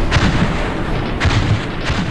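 Heavy gunfire with deep booming blasts: three loud shots, one just after the start, one about a second later and one near the end, over a continuous battle rumble.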